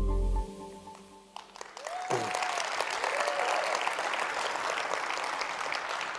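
The last held chord of background music fades out in the first half-second. From about two seconds in, an audience applauds steadily, with one voice calling out as the clapping begins.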